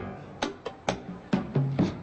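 About five sharp, irregularly spaced percussion hits from a live stage band's drum kit.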